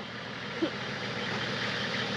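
Nissan Patrol four-wheel drive's engine idling steadily.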